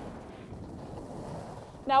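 Steady rushing noise of skis sliding over groomed snow at speed, mixed with wind on the microphone. A voice starts to speak at the very end.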